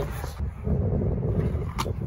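Scooter wheels rolling on concrete, a steady low rumble, with one sharp click near the end.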